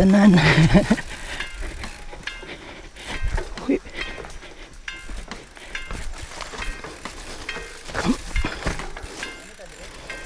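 Mountain bike riding down a bumpy dirt singletrack: scattered knocks and rattles from the bike over the bumps, over rolling tyre and wind noise. A voice laughs briefly in the first second.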